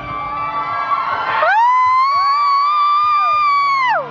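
Concert audience screaming: one loud, high shriek held for about two and a half seconds as the backing music drops out, with a second shorter scream rising and falling under it. Live band music plays for the first second and a half.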